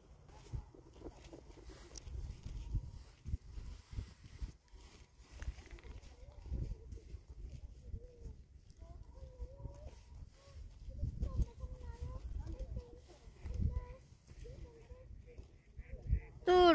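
Irregular low rumble and knocks of wind and handling on a phone's microphone, with a faint wavering voice-like tone in the second half.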